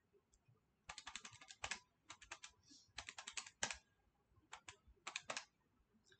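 Keys tapped in quick runs of short, light clicks, several bursts of a few presses each, starting about a second in.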